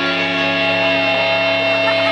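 Rock band playing live: electric guitars holding sustained notes over drums, with no vocals.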